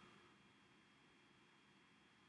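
Near silence: a pause in the narration with only faint steady background hiss.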